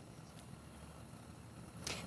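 Faint steady background hiss with a low hum: the quiet of a broadcast feed between two speakers. A short breath or click comes just before the end.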